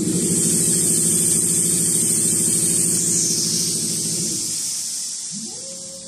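Richpeace two-head perforation machine running. Its head drive makes a steady, rapid mechanical hum for about four and a half seconds, then winds down. It starts up again with a rising pitch near the end, over a steady high hiss.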